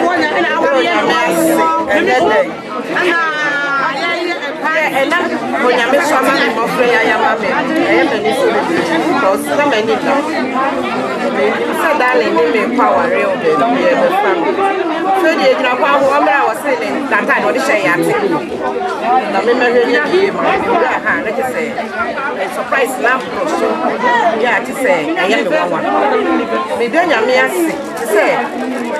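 Chatter of several voices talking at once, without a break.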